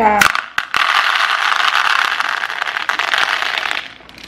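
Dried chickpeas poured from their package into a large bowl: a couple of single clicks, then a dense, steady rattle of the hard beans pattering into the bowl for about three seconds, stopping just before the end.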